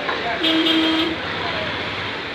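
A vehicle horn gives one steady honk of under a second, about half a second in, over a background of traffic and voices.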